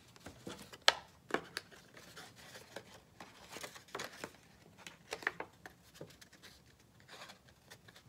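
Scissors cutting through a heavy paper plate in short, irregular snips, with the plate rustling as it is turned; the sharpest snip comes about a second in.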